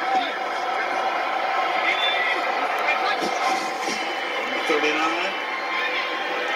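Television playing an American football broadcast: a steady crowd din with indistinct play-by-play commentary.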